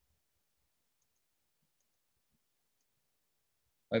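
Near silence: a gated room tone for most of the stretch, then a man's brief spoken "oh" at the very end.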